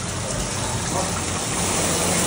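Taps and shower heads running, water spraying into a stainless steel trough: a steady rush of water, with a low hum underneath.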